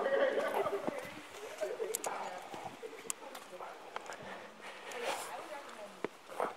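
A climber's strained breathing and vocal effort up close during a hard move, followed by scattered sharp taps and scrapes of hands, shoes and gear against the rock.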